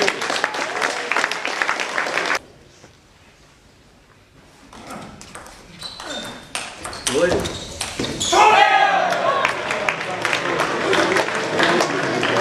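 Spectators clapping in a large hall, cut off suddenly after about two seconds. A table tennis rally follows, with sharp pings of the celluloid ball on bats and table. About eight seconds in, the point ends in shouts and cheering from the crowd, with clapping after it.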